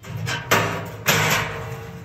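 An expanded-metal grate clanking against the inside of a steel water-heater tank as it is pressed into place: two loud metal rattles about half a second apart, the second trailing off longer.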